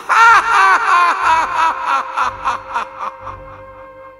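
A man's drawn-out, theatrical laugh, a rapid run of 'ha' syllables that fades out about three seconds in. Background music with held tones and a steady low drum beat runs under it.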